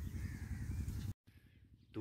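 Faint outdoor background with a brief bird call in the first half-second, then a sudden cut to silence just after one second in.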